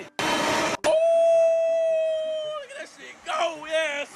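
Countertop blender running on a batch of spinach: a short burst of noise, then a steady whine for about two seconds that dips and cuts off.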